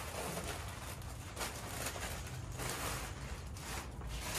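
Clear plastic bags rustling and crinkling as they are handled, over a steady low hum.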